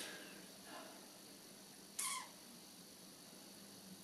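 Quiet room tone with a man's short, breathy sniff about two seconds in and a fainter breath about a second in.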